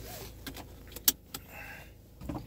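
Handling noise from a phone being turned around inside a car: a few short clicks and knocks, the loudest and sharpest about a second in, over a faint low hum.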